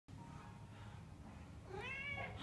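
A domestic cat meowing once near the end, one call that rises and then falls in pitch, over a faint low background hum.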